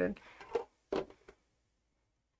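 A woman's voice finishing a sentence, followed by a few short, quiet sounds about half a second and a second in.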